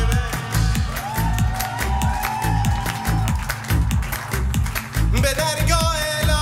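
Live Persian folk-electronic band music: a pulsing electronic bass beat about twice a second with sharp percussion hits. A long held note slides up and sustains about a second in.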